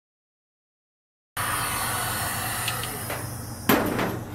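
A heat gun blowing hot air on a low setting, melting the top layer of wax in a container candle: a steady hiss with a low hum that cuts in abruptly about a third of the way in, with a sharp click near the end.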